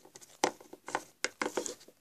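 A handful of short taps and rustles from small plastic toy figures and their packaging being handled.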